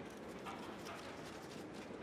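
Faint open-air background noise of a standing crowd, with a few light scattered clicks.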